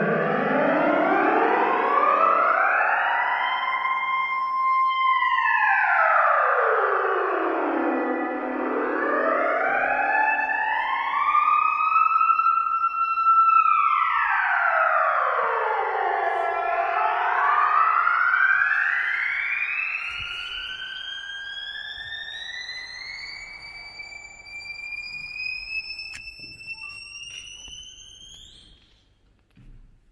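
Modular synthesizer holding a sustained tone that sweeps slowly up and down in pitch: it rises over about four seconds, holds, falls, and rises and falls again. In the second half it makes one long slow climb, growing quieter, and cuts off about a second before the end.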